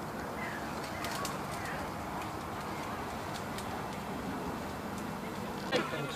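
Faint bird calls over a steady background of outdoor noise.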